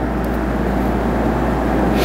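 Steady background noise: a constant low hum with an even hiss over it, unchanging throughout.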